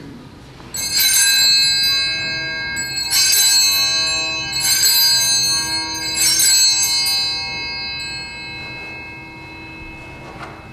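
Altar bells rung four times, about a second and a half apart, at the elevation of the chalice during the consecration. Each ring is a cluster of high, jingling metallic tones that hangs on, and the ringing fades near the end.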